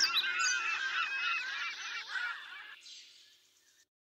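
Many birds calling at once, fading out and ending about three seconds in.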